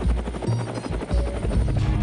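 Helicopter rotor chop, a rapid even pulsing, mixed with a music track with deep bass notes.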